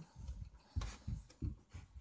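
Handling noise: about four soft, low bumps with faint rustling, spread unevenly.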